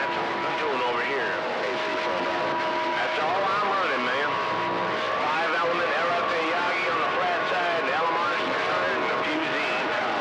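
CB radio receiving long-distance skip through its speaker: a bed of static with several far-off stations talking over one another, their voices garbled and warbling, and steady whistles from other carriers beating against them.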